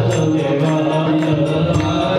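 Hindu devotional music: chanted vocals over sustained instrumental tones, with a steady beat of about three strokes a second.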